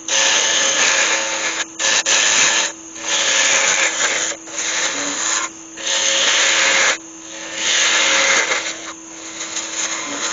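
A turning tool cuts a spinning yew blank on a wood lathe, shaping a rounded snout. It makes a loud, rough scraping hiss in about six passes of a second or so, with short breaks between them. The lathe's motor hums steadily underneath.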